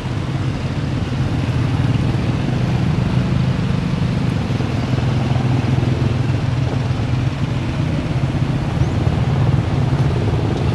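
Street traffic of motorized tricycles and motorcycles passing close by, their small engines making a steady, loud drone.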